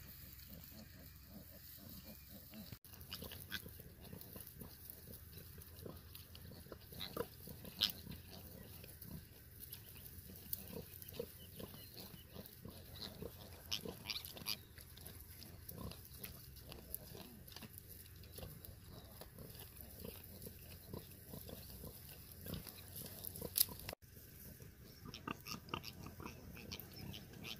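A sow and her newborn piglets grunting faintly as they root and move through a nest of dry grass and straw, with many short rustles and clicks. Two sharper sounds stand out, about eight seconds in and near the end.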